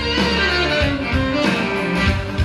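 Saxophone playing a melody over a musical accompaniment with guitar and a low bass line.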